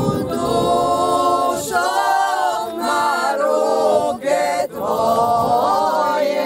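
Unaccompanied group singing of a traditional Croatian folk song by costumed folklore-society singers: long held notes with brief breaks between phrases.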